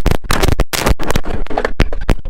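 Loud, irregular crackling bursts of distortion from a faulty camera microphone, over a skateboard riding a mini-ramp quarter pipe.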